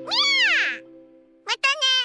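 A cartoon kitten's meow: one long call that rises and falls, then two short mews near the end, over a closing jingle that fades out partway through.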